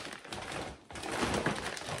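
Crinkling and rustling of plastic food packets, shredded-cheese bags, handled and shaken, an irregular crackle with a brief lull a little before the middle.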